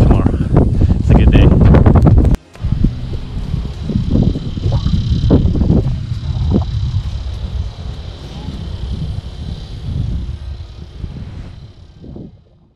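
Wind buffeting an action-camera microphone outdoors, heavy under one spoken word at first, then cutting off sharply. A softer windy outdoor ambience with a faint steady high hum follows and fades out near the end.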